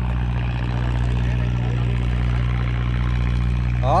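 An engine running steadily, a constant low drone that does not change in pitch or level.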